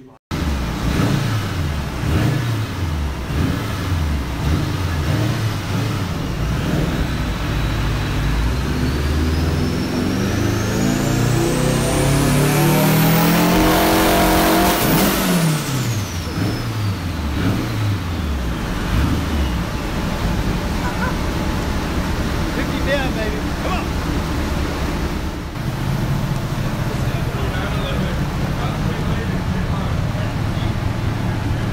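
Turbocharged Nissan SR20 VVL four-cylinder, a 2.2-litre Tomei stroker with a Garrett GTX3582R turbo, running on a chassis dyno. It revs briefly a few times, then makes one full-throttle pull of about eight seconds, the engine note and a high turbo whine climbing steadily together. The revs then fall away and it settles into steadier running.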